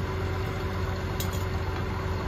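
An engine idling steadily: a constant low hum with a steady tone, unchanged throughout. A faint click sounds a little past halfway.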